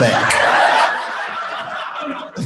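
Audience laughing, loudest in the first second and then dying away.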